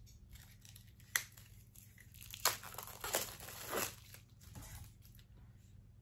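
Plastic wrapping on a Funko Soda can being torn open and crinkled by hand: a sharp click about a second in, then a few seconds of tearing and rustling.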